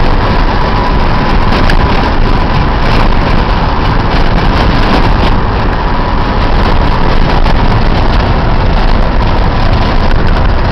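A car driving over a rough, unpaved dirt and gravel road, heard from inside the cabin: a loud, steady rumble of tyres and engine, broken by frequent small knocks and rattles from the bumpy surface.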